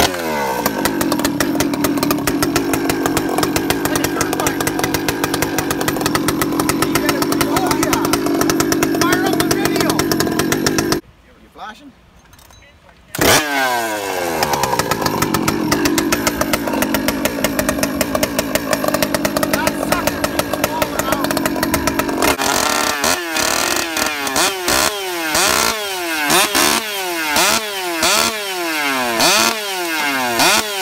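Two-stroke chainsaw running at a steady high speed. It cuts out about eleven seconds in and is started again about two seconds later. From about two-thirds of the way through, the throttle is blipped over and over, the revs rising and falling roughly once a second.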